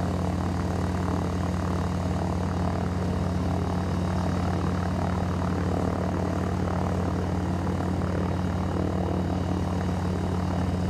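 Gyroplane propeller engines running on the ground: a steady low drone that holds the same pitch throughout.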